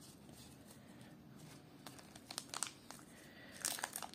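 Foil wrapper of a Pokémon card booster pack crinkling as it is handled: a few light crinkles a little past halfway, then louder crinkling and tearing near the end as the pack is torn open.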